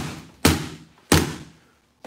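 Three strikes with a closed fighting fan on a freestanding heavy punching bag, about 0.6 s apart, the first right at the start, each a sharp thud that dies away quickly.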